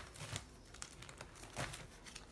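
Plastic binder pocket pages being turned, a faint crinkling and rustling of the plastic with a few soft clicks.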